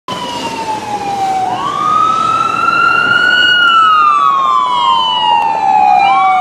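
Emergency vehicle siren in wail mode. The pitch dips, sweeps up sharply about one and a half seconds in, climbs slowly for a couple of seconds, then falls away gradually.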